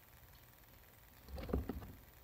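A short burst of bumps and rustling, about half a second long, a little past the middle, from a guinea pig shifting inside its hideout on paper bedding.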